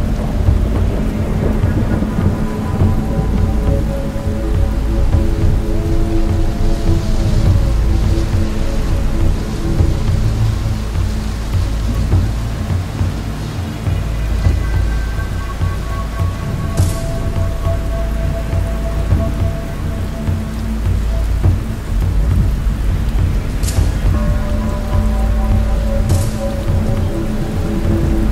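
A soundtrack of steady rain and a constant deep, rolling thunder rumble, with long held musical tones over it. Twice in the second half there is a brief sharp crack.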